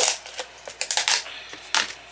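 Plastic clicks and clatters as the clear lid of a plastic tub of paint is worked off and set down: about five sharp clicks, the loudest at the start and near the end.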